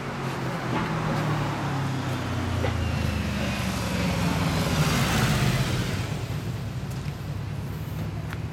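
A road vehicle passing. Its engine rumble and tyre noise swell to a peak about five seconds in, then fade.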